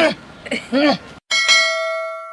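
A voice calls out briefly, then a boxing-ring bell is struck once about a second in and rings on, marking the end of the round.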